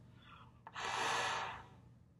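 A rush of air blown through a trombone with its water key held open, lasting about a second, to release condensation from the slide. A click comes just before it.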